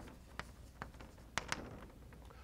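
Chalk writing on a blackboard: a handful of short, sharp taps and strokes at irregular intervals.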